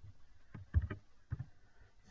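A handful of computer keyboard keystrokes: separate clicks with dull thumps, the loudest about three-quarters of a second in.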